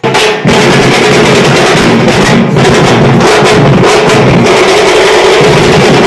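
Very loud live folk drumming: several drums beaten in a dense, fast rhythm, with a steady tone held over it throughout.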